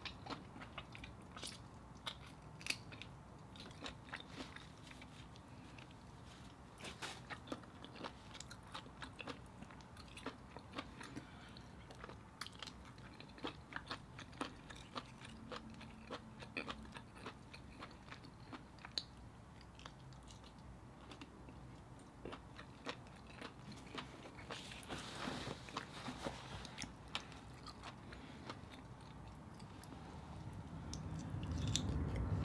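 Close-miked, faint mouth sounds of someone eating mussels: chewing with many small, quick wet clicks and smacks.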